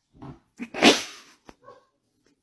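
Puppy giving a short low sound, then a loud harsh cry about a second in, and a small yip near the end.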